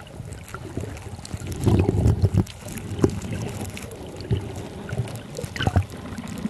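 Muffled water noise picked up by a submerged camera while snorkeling: low rushing and sloshing with scattered small knocks, louder for about half a second around two seconds in.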